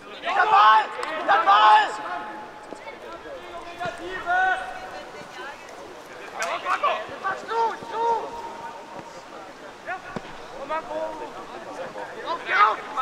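Voices shouting calls across an open football pitch during play. The loudest shouts come in the first two seconds, with further calls about midway through.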